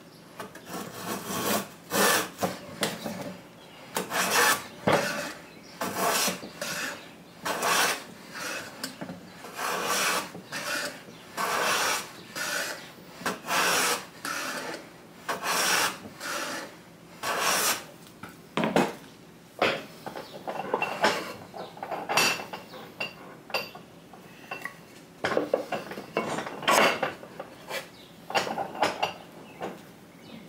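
Metal bench plane run on its side against the edge of a wooden block, cutting shavings in a steady series of short rasping strokes, about one a second, with a brief lull about two-thirds of the way through.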